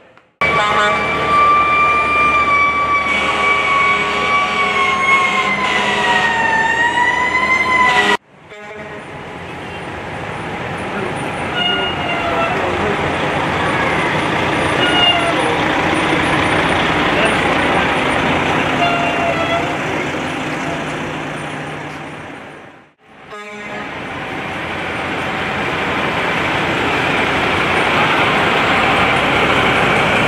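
Fire trucks passing in a parade. First a loud siren tone holds nearly steady for about eight seconds, dipping slightly before it cuts off. Then a fire engine's engine rumble swells and fades as it drives slowly past, and after a break a tanker truck's engine grows louder as it approaches.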